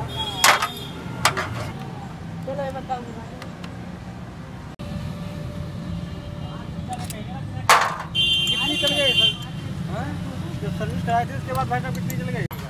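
Sharp metallic clinks of hand tools on a motorcycle engine's side cover and its screws, a few separate strikes, over a steady hum of street traffic. A short buzzing tone lasts about a second around two-thirds of the way through, with indistinct voices behind.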